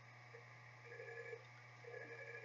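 Near silence: room tone with a steady low hum and a few faint, brief higher tones in the middle.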